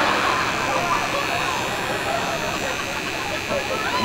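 Steady murmur of many people talking at once, with no single voice standing out.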